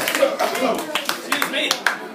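Scattered, irregular claps from a small audience, with voices talking over them.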